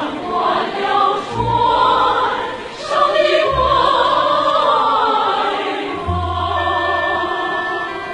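Music: a choir singing a Chinese classical song with orchestral accompaniment, over sustained low notes that come and go.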